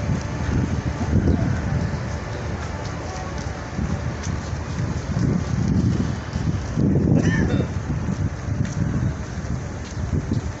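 Wind buffeting the microphone as a low rumble that comes and goes in gusts, with voices of people around.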